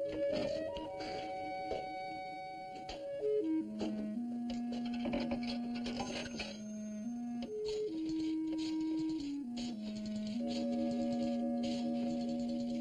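Slow dramatic background score of held low notes stepping up and down in pitch, with light clicks from the payphone's rotary dial.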